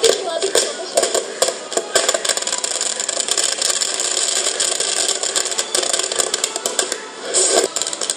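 Fireworks crackling in a dense, unbroken run of rapid pops and bangs, with a brief lull about seven seconds in.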